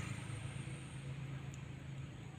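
Faint, steady low hum of a running motor, with no clear changes.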